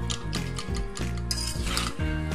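Background music, with a metal spatula scraping and stirring shrimp and taro stolons (kochur loti) in a metal pan; the loudest scrape comes in the second half.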